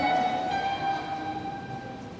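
A single held note on an electronic keyboard, at the top of a short rising run, fading away over about a second and a half.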